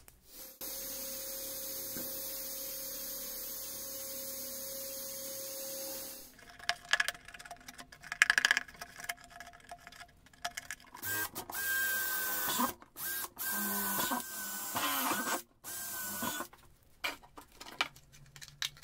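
A small electric motor runs steadily for about five seconds, then stops; after some clicks and knocks it runs again in a series of short bursts.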